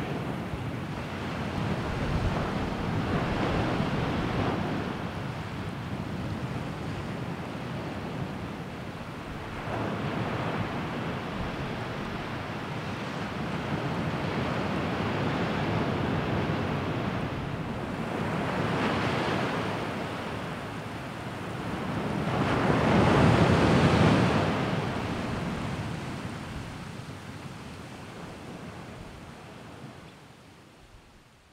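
Sea waves washing in slow, uneven swells, a few surges rising and falling, the loudest about two-thirds of the way through, then fading out near the end.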